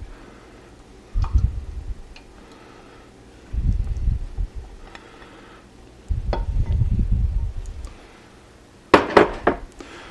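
A silicone spatula scraping flour paste out of a glass mixing bowl into a saucepan, with several dull bumps of the bowl and pan being handled. A quick run of sharp clinks comes near the end.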